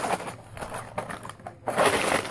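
Cardboard toy-set box being handled and shaken out, rustling and scraping, with a louder rustle of the plastic parts bag near the end.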